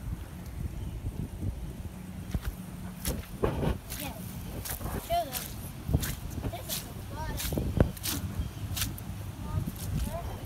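Footsteps on waterlogged grass and leaf litter: a string of sharp, wet clicks from a few seconds in, over a low rumble, with faint voices in the background.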